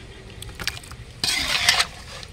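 Metal ladle stirring and scraping through thick gravy in a metal pot: a couple of light clicks, then one louder scrape of about half a second near the end.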